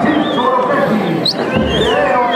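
Many voices shouting and howling at once in overlapping, wavering cries, with a high wavering whistle-like cry above them. These are the marching soldiers' war cries.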